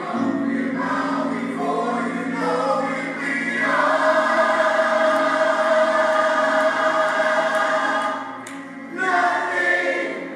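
Gospel choir singing in parts. They hold one long chord through the middle, drop away briefly near the end, and come back in with the next phrase.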